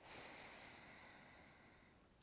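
A soft, drawn-out exhale: a faint breathy hiss that starts suddenly and fades away over about two seconds.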